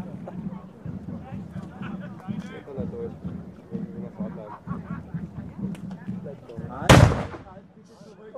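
A single cannon shot about seven seconds in: one sharp boom with a short rumbling tail, over the murmur of people talking.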